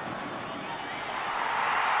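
A cricket bat strikes the ball with a single sharp crack, then a stadium crowd's noise swells as the shot runs to the boundary for the match-winning four.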